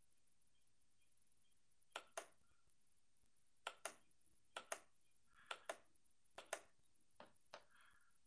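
A series of light clicks over quiet room tone, mostly in quick pairs a fifth of a second apart, five pairs and then two single clicks near the end, from someone working a device by hand.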